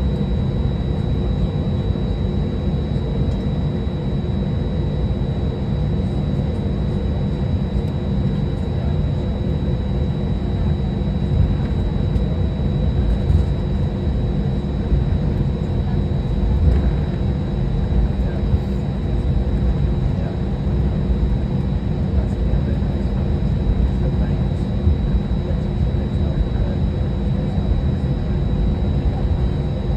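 Cabin noise of an Airbus A320-200 taxiing: a steady low rumble from the jet engines at taxi power, with a faint steady high whine.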